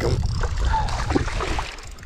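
A small hooked bass splashing and thrashing at the water's surface as it is reeled to the boat and landed, over a steady low rumble.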